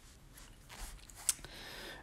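Quiet pause: faint background hiss with one short, soft click a little past the middle.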